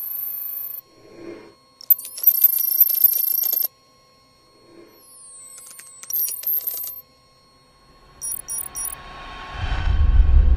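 Electronic interface sound effects for an on-screen computer graphic: short high beeps, a dense run of high digital chirps about two seconds in, sweeping tones around six seconds, and a quick triple beep, with a low rumble swelling up near the end.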